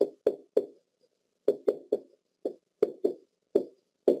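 A pen stylus knocking against the surface of an interactive whiteboard while writing a word, about ten sharp taps at uneven intervals, each with a short hollow ring.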